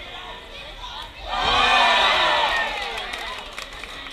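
Crowd cheering and shouting, swelling sharply about a second in, loudest for about a second, then easing back to scattered shouts.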